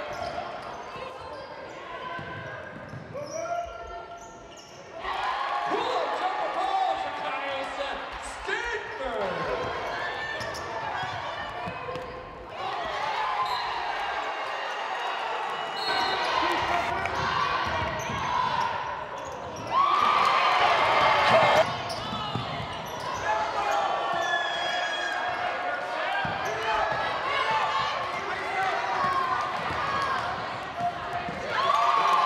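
Live game sound in a gym: a basketball bouncing on a hardwood court amid the voices of players and spectators. The level jumps abruptly several times.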